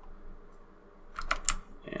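Near quiet for about a second, then a short run of sharp clicks from computer input at the desk, the loudest about a second and a half in.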